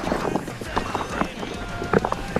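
A 2017 Diamondback Atroz Comp full-suspension mountain bike rattling over a rocky trail: dense, uneven clicks and knocks from tyres on stone and the chain and frame, over a rush of rolling noise. A brief squeal comes in near the end.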